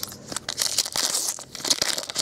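Foil trading-card pack wrapper being torn open and crinkled by hand: a dense run of sharp crackles.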